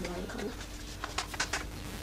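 A woman coughs once, then a few faint taps follow.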